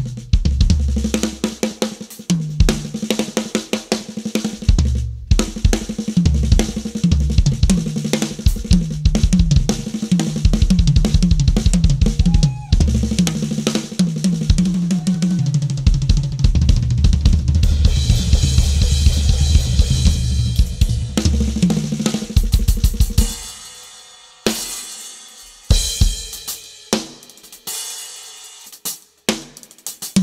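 Drum kit played busily: snare, bass drum, hi-hat and cymbals in quick strokes. About three quarters of the way through it thins to a few sparse, separated hits with short gaps between them.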